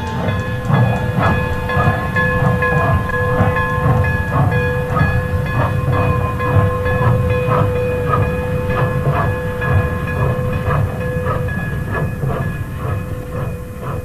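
Union Pacific 9000-class 4-12-2 three-cylinder steam locomotive (UP 9009) running, its exhaust beating about three times a second over a heavy rumble. Steady held tones sound over it, the lowest dropping out late on, and the sound eases off near the end.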